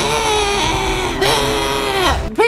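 A man's drawn-out, high-pitched scream, put on in mock excitement. It comes as two long held cries with a short break just over a second in.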